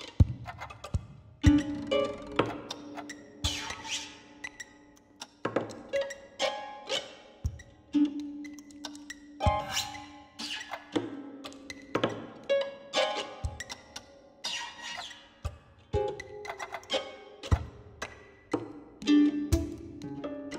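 Electroacoustic music from a computer sampler: overlapping sequences of short sampled sounds fired in an irregular rhythm, a sharp attack every half second to a second, each ringing briefly.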